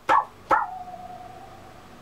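A steel hand saw blade being flexed: two sharp snaps of the bending blade, then one clear ringing tone from the blade that sinks slightly in pitch and slowly fades. The saw "sings pretty good".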